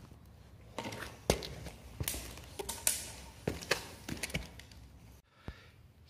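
A tape measure and a wooden board being handled on a concrete floor: a string of light clicks and knocks, spaced irregularly about half a second to a second apart.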